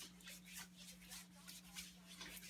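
Faint rubbing of a hand over skin slick with coconut oil, a soft run of short repeated strokes, over a low steady hum.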